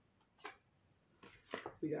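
Faint handling of tarot cards on a cloth-covered table: one short soft tap about half a second in, then a brief rustle as a card is drawn from the deck and laid down.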